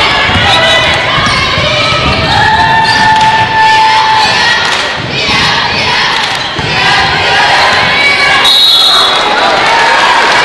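Crowd shouting and cheering in a large basketball arena, with the ball bouncing on the hardwood court. A referee's whistle blows shrilly and briefly near the end, calling a foul before a free throw.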